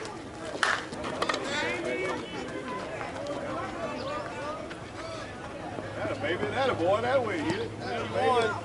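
Softball bat striking the ball once, a sharp crack with a short ring about half a second in, as the batter puts the ball in play. Voices of players chatter and shout throughout.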